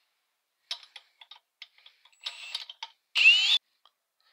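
A few clicks and knocks, then short runs of a power drill turning the crankshaft of a Puch TF/SG oil-pump test jig. The last run, a little past three seconds in, is the loudest and carries a whine that bends upward.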